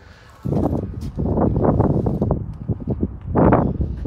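Gusting wind buffeting a handheld phone microphone, mixed with handling and footstep knocks as the camera is carried along the side of a pickup truck.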